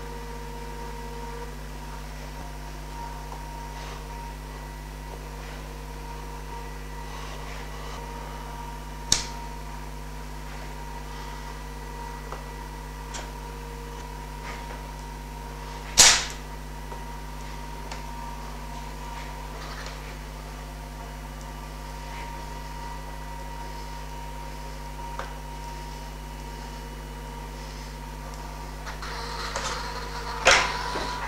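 Festool Conturo KA65 portable edge bander running with a steady hum as it feeds glued edging around a curved panel edge. A few sharp clicks cut in, the loudest about halfway through.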